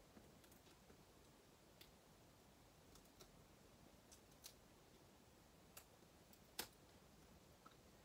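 Faint, scattered small clicks and ticks of fingernails picking and peeling the backing papers off small adhesive pads, with one sharper click about two thirds of the way through; otherwise near silence.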